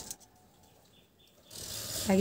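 Near silence with a few faint, short bird chirps about halfway through, then a steady background hiss that comes in near the end.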